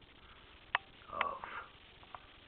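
Two sharp computer mouse clicks about half a second apart, the second followed by a short sniff.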